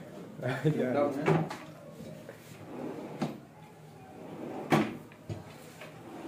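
Kitchen cabinet drawers being pulled out and pushed shut on their runners, with several sharp knocks as they stop, the loudest about three-quarters of the way through.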